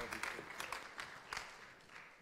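Congregation applauding, the clapping thinning out and fading as it dies down.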